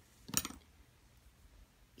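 A single short, sharp click about a third of a second in, against a quiet background.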